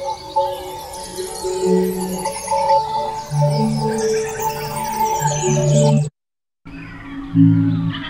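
A birdsong field recording played as notes and chords on a keyboard through a sampler, EQ'd into resonant tones. Held pitches shift between notes with bird chirps running through them. It cuts off for a moment about six seconds in, then a new chord starts.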